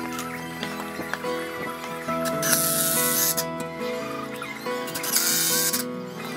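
Background music with steady held notes, cut through twice by short bursts of a cordless drill boring into wood, once about two and a half seconds in and again about five seconds in.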